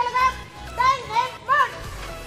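High-pitched voices, like children calling out or singing, in about four short wavering phrases over a low steady rumble.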